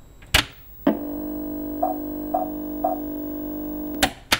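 Electronic title-card sting: two sharp hits, then a held synthesized chord with three short pips about half a second apart, cut off at the end.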